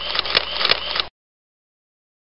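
Logo-intro sound effect: a short burst of crackling with sharp clicks that cuts off suddenly about a second in, followed by dead silence.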